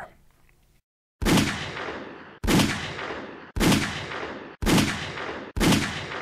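Five 9mm pistol shots from a short-barrelled Sig P938 firing Winchester Ranger T 147-grain hollowpoints, about a second apart, each with a short decaying tail.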